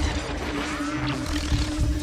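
Distorted, glitchy film-trailer sound design under an animated studio logo: a dense crackling, static-like wash over a steady low hum.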